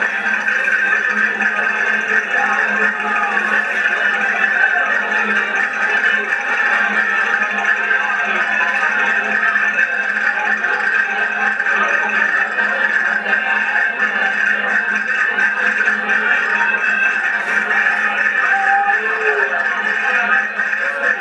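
Accordions playing a folk dance tune, a continuous dense sound of sustained reeds with little bass.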